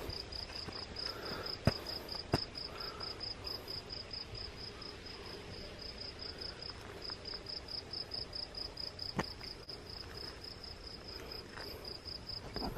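Crickets chirping in an even, rapid rhythm, about four chirps a second, with a few sharp clicks, the loudest about two seconds in.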